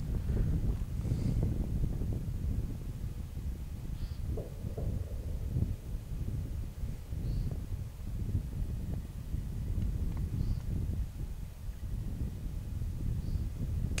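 Steady low wind rumble on the microphone, with a faint short high chirp every three seconds or so.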